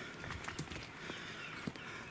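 Footsteps crunching through needle litter and twigs on a forest floor, with a few sharp snaps about half a second in and again near the end.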